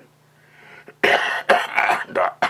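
An elderly man with lung cancer coughing into his hand: a faint breath in, then a run of loud coughs starting about halfway through.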